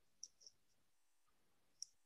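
Near silence, broken by two faint clicks, one just after the start and one near the end.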